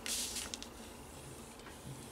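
Kraft cardstock rustling as it is folded over and pressed flat by hand: a brief rustle at the start, then faint scuffing of paper under the fingers.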